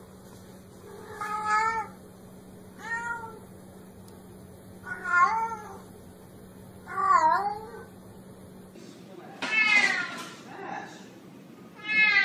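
A cat meowing again and again: about six separate meows, each rising and falling in pitch, one to two seconds apart. A steady low hum lies under the first four meows and stops abruptly about three-quarters of the way through.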